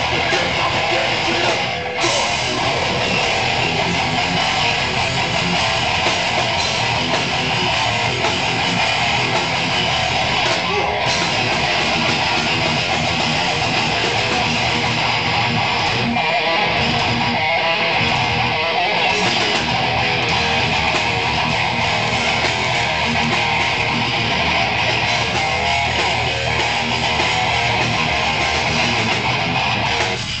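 Live band playing loud, continuous guitar-driven rock music on stage, with electric guitars strummed over bass.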